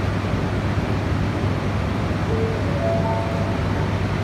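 Shinkansen standing at the platform: a steady low hum under an even rushing noise, with a few faint short tones a little after two seconds in.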